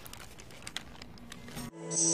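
Faint rustling and small clicks of over-ear headphones being handled and put on, then a song starts abruptly near the end with sustained chords.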